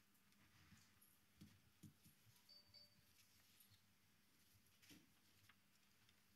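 Near silence: faint room tone with a few soft, scattered clicks and knocks.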